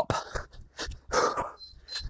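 Hard breathing from exertion: a man puffing out short breaths as he throws punches, about five puffs in two seconds.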